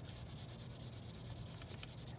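A white colouring stick rubbing against paper as a zigzag line is drawn, a faint steady scratchy rub made of rapid small strokes.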